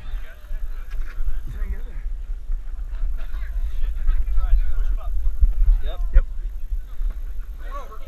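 Heavy low rumble of wind and handling noise on a body-worn GoPro action camera's microphone while climbing, with people's voices calling out around it and a few sharp knocks.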